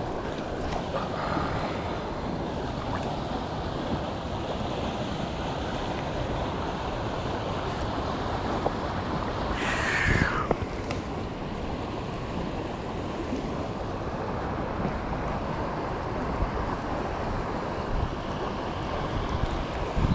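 Steady rush of flowing creek water over a riffle, with a brief whoosh that falls in pitch about ten seconds in.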